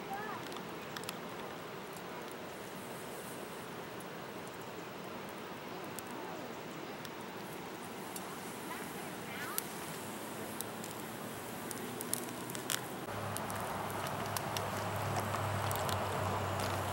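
Steady rush of river water with the crackle and pops of a small birch-wood fire burning in a fire bowl. About thirteen seconds in, the fire comes closer and louder.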